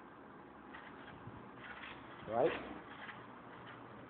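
A man's voice saying one short word, 'right', about two seconds in, over faint steady background hiss.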